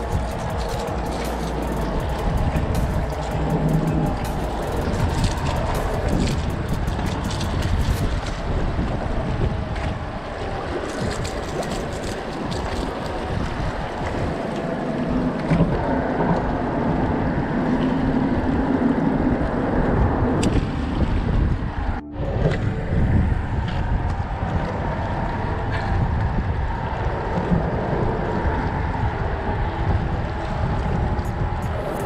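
Wind buffeting the microphone over water lapping against shoreline rocks, with background music underneath. There is a brief drop-out about 22 seconds in.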